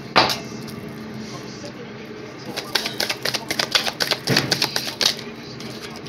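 A deck of cards being shuffled by hand: one sharp snap right at the start, then a quick run of card flicks and slaps lasting about two and a half seconds from just before halfway.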